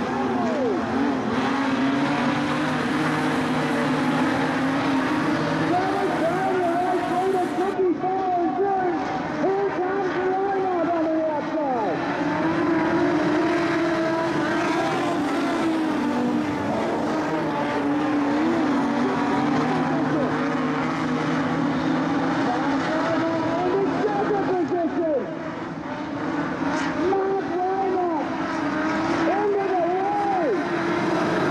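A pack of modified sedan race cars on a dirt speedway, several engines revving up and down over one another as they go through the turns. The sound dips briefly a little before the end.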